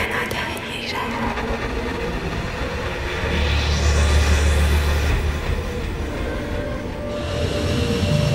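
Dark ambient horror soundscape: a dense rumbling drone with a faint steady tone in it, swelling into a deep low rumble with a sweeping hiss above it about three seconds in.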